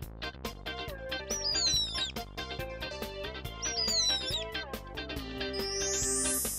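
Upbeat children's background music with a steady beat, over which a cartoon bird chirps twice, each a short falling whistle, about a second and a half in and again about four seconds in. A bright rising chime sweeps up near the end.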